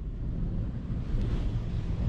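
Strong wind blowing against the microphone: an uneven, gusting rush of noise, heaviest in the low end.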